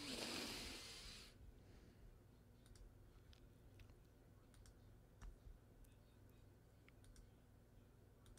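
Faint, scattered computer mouse clicks at a desk, near silence between them, after a short breathy rush of noise in the first second.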